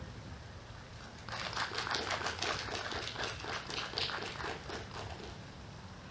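Small audience applauding, a scattered patter of hand claps that starts about a second in and fades out near the end.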